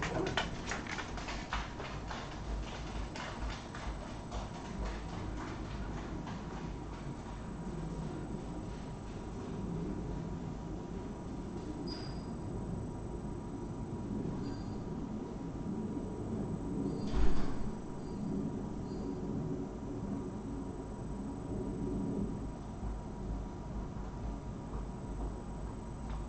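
Footsteps and clicks as the room empties in the first few seconds, then quiet room tone with a steady low hum. A brief faint high beep comes about 12 seconds in, and a single knock about 17 seconds in.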